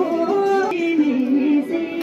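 Women's voices singing a Boedra, a Bhutanese folk song, in long held notes that bend and slide, with a step to a new note about three-quarters of a second in.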